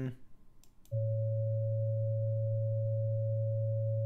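Two steady pure sine tones sounding together from about a second in: a low A at 110 Hz and a C-sharp at 554.4 Hz, the equal-tempered piano pitch of the major third. This C-sharp sits about 13 cents sharp of the A's natural 550 Hz harmonic, so the pair is a slightly out-of-tune major third compared with just intonation.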